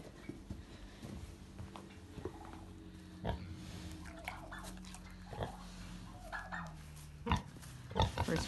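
A Tamworth sow giving a few soft, short grunts and sniffs as she noses around close by, with a few sharp knocks in between.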